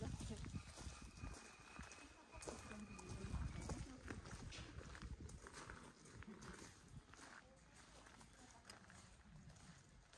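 Faint footsteps on a gravel path, a run of irregular soft crunches, with faint voices in the background.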